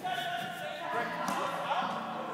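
Indistinct voices over background music in a large indoor hall.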